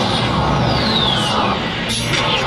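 Action-show soundtrack music with a sound effect that falls steadily in pitch over about a second in the middle, played back through a hall's loudspeakers.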